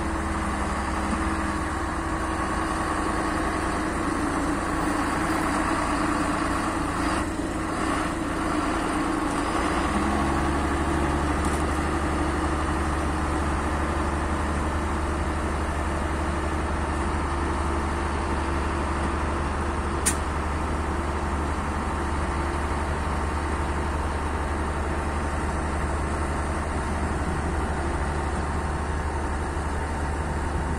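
Farm tractor diesel engines running, a steady low drone whose note shifts about ten seconds in. There is one sharp click about twenty seconds in.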